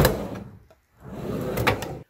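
Two short sliding, scraping sounds, each with a sharp click or knock, about a second apart.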